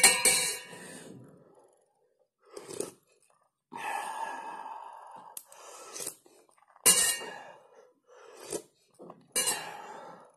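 Several sips of hot coffee slurped off a spoon, with breaths between them and the spoon clinking against a stainless steel mug.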